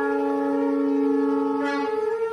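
Reedy wind-instrument tones, several notes held together as one steady chord, with one note shifting near the end.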